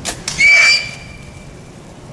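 A sharp snap, then a wild hog squealing loudly in one high, steady cry that fades away over about a second.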